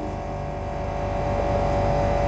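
A steady mechanical hum with a low buzz and a held tone, growing slightly louder over the second.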